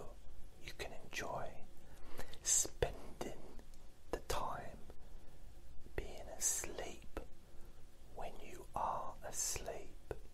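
A man whispering in soft phrases, with sharp hissing s-sounds a few times.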